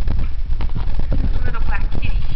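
Footsteps on a hard tile floor and the rumble of a handheld camera being carried, with a short high call near the end.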